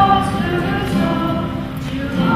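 A choir singing, with held notes that move from one pitch to the next.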